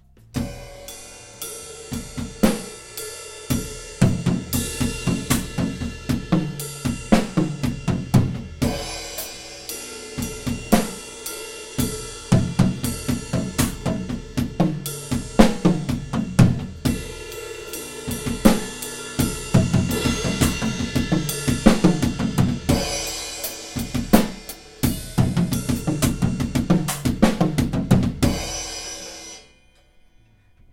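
Acoustic drum kit playing a linear gospel chop: fast interlocking bass drum, snare and hi-hat strokes with cymbal accents, in repeated phrases separated by brief pauses, stopping just before the end. The last run is a bit off in how the pattern is spread around the kit.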